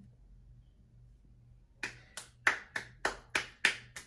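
A pair of hands clapping in a quick even series, about four claps a second, starting about two seconds in after a near-quiet stretch.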